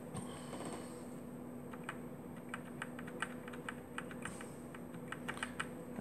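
Typing on a computer keyboard: a run of irregular key clicks starting about two seconds in, over a steady low hum.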